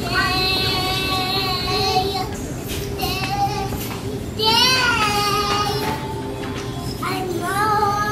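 A young girl singing high, drawn-out notes: a long held note at the start, a rising-and-falling one about halfway, and a short one near the end, over a steady low hum.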